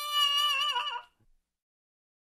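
A cartoon T-Rex's voice giving a short, high whimper that dips in pitch as it ends, about a second in, followed by silence.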